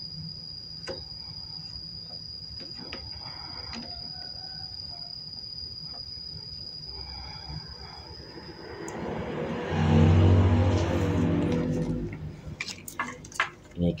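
Small clicks and taps as wire ends are pushed into an XT90 connector held in a vise, over a steady high whine that stops about nine seconds in. A passing vehicle's engine then swells and fades between about nine and twelve seconds, the loudest sound.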